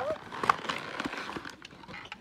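Scattered light clicks and knocks of objects being handled, the sharpest about half a second in, after a child's high-pitched voice trails off at the very start.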